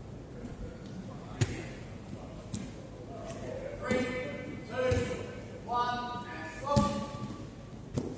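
A sharp thud of a body hitting the gym mats, followed by four short loud vocal calls from a person, each about half a second long, with a second thud near the end.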